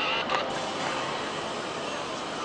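Steady cabin noise inside a Hyundai creeping along under automatic parking assist, with the electric power steering turning the wheel by itself and a brief click near the start.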